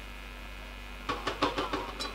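A low electrical hum from the public-address system in a pause, then, about a second in, irregular noise from a rally crowd cheering and waving brooms.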